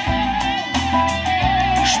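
Live band music between sung lines: a lead electric guitar plays over strummed acoustic guitar and keyboards, with a low bass line pulsing underneath.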